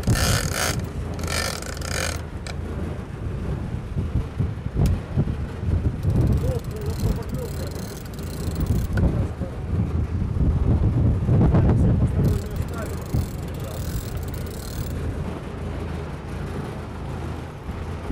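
Sport-fishing boat's engine running steadily at trolling speed, with wind and rushing water from the wake. There are a few indistinct voices, and higher hissing in two stretches.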